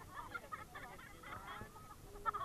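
Several people laughing and shrieking together, faint and overlapping, in short wavering bursts.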